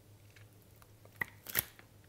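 A table knife cutting and lifting a piece of vegan blue cheese, with faint scraping and two sharp clicks a little past halfway.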